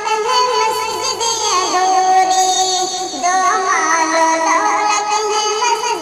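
A solo voice singing a slow melody, holding long notes and then, about three seconds in, breaking into a wavering run of ornaments before settling onto held notes again.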